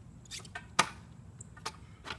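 A few sharp clicks and taps from gear on the handlebars of an ElliptiGO being handled; the loudest comes just under a second in.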